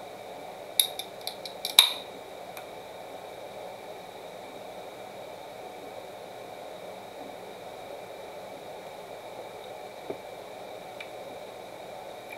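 Aluminium soda can's pull tab being worked open: a few sharp clicks about a second in and a louder pop near two seconds, followed by steady room noise.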